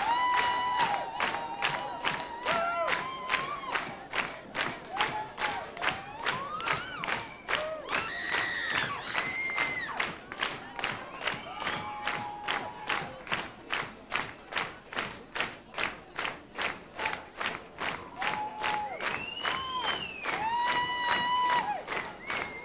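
A rock-concert audience clapping together in steady rhythm, a little over two claps a second, with long drawn-out shouts and calls from the crowd over the clapping.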